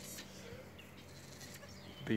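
A brief, faint high bleat from a dwarf goat kid near the start, over quiet outdoor background.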